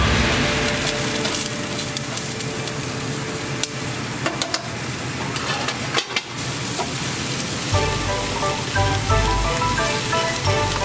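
Broccoli and green bell pepper sizzling as they stir-fry in a nonstick pan, with a few light knocks. Background music comes in near the end.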